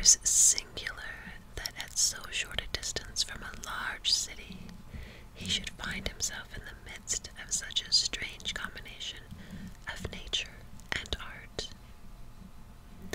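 A woman whispering close to the microphone, reading a text aloud in a soft, unvoiced voice.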